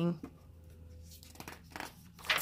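A page of a softcover picture book turned by hand, a soft paper rustle in the second half.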